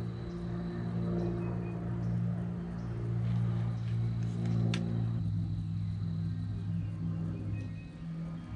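A steady low hum of several held pitches, which shifts down about five seconds in, with a single sharp click near the middle.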